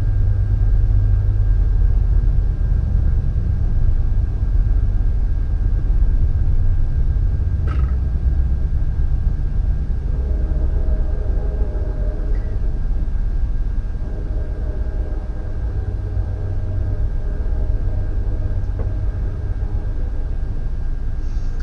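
Steady low rumble with a faint constant high whine over it. There is a single short click about a third of the way through, and faint pitched humming tones in the second half.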